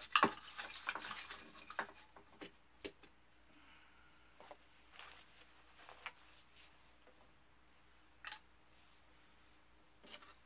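Light clicks, taps and small rattles of hand work at a model-ship bench as debris is cleared off the model, thickest in the first three seconds, then a few scattered taps.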